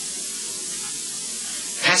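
Steady high-pitched hiss of an old, grainy recording, with a man's voice breaking in with a short word near the end.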